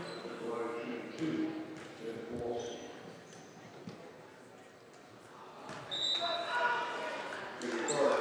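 Indistinct voices of players and crowd echoing in a gym, with a basketball bouncing on the hardwood floor.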